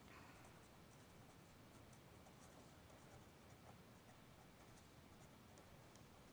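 Near silence, with the faint scratching of a pen writing words on paper.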